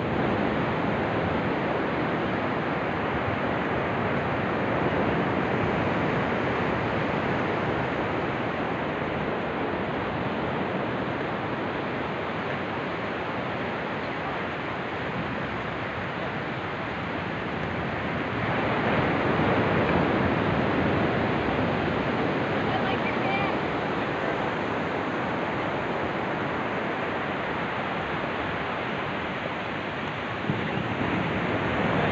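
Steady rushing of ocean surf mixed with wind buffeting the microphone, swelling louder for a few seconds about two-thirds of the way through.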